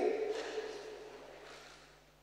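The last word of a man's amplified speech dying away in a long reverberation in a large church, fading over about two seconds to near silence, over a faint steady hum.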